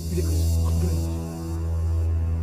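Low, steady droning hum of the film's background score, a held synth chord with a faint hiss over it.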